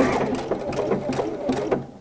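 Pfaff Creative Icon sewing machine stitching a tapered decorative quilt stitch: a fast, even run of needle strokes that fades out just before the end.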